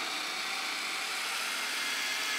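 Hand blender with a chopper bowl attachment running steadily, its blade puréeing peas into a thick hummus.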